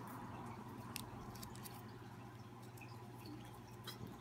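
Faint crinkling and a few small clicks of a paper slip being folded by hand, over a low steady hum.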